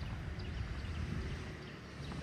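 Outdoor street ambience: a steady low rumble with the light, regular footsteps of someone walking on pavement.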